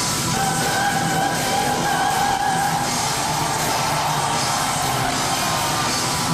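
Female operatic soprano holding one long high note in head voice over a symphonic metal backing of guitars and drums. The note sounds for about the first half and then drops back into the band.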